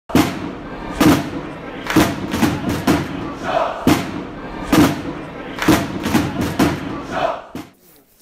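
Intro music for a channel logo: a heavy thudding beat about once a second with crowd-like shouts over it, cutting off abruptly near the end.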